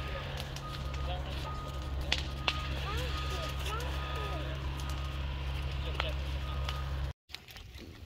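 A steady low rumble, with faint distant voices and a few sharp crackles over it; it cuts off abruptly about seven seconds in.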